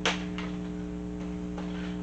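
Steady electrical hum, with a faint click about half a second in.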